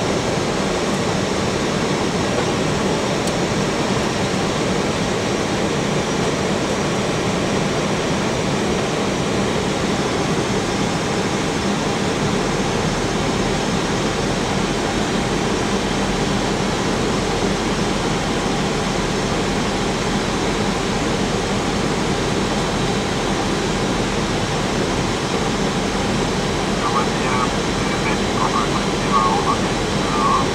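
Steady cockpit noise of a jet airliner's flight deck in flight: an even rush of air and cabin ventilation with a low engine hum, unchanging throughout.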